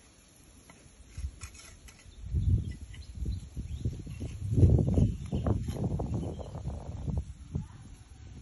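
Wind buffeting the phone's microphone: irregular low rumbling gusts that start about a second in and are strongest around two and a half and four and a half seconds in.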